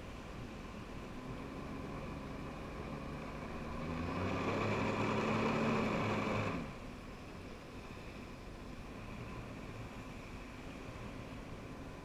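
Personal watercraft engine running low, then throttled up about four seconds in and held for a couple of seconds before dropping back suddenly. It is pumping water through the hose to the flyboard.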